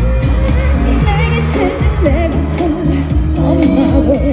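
A female singer performing an upbeat Korean pop song live with a full band, her melody over a steady bass line and drum beat, amplified through a concert PA.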